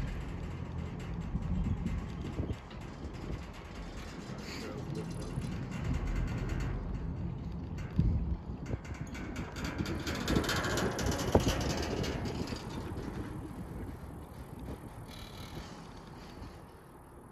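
A Riblet fixed-grip double chairlift in motion: the haul rope and chair rumble past the tower sheaves, with sharp clanks about eight and eleven seconds in.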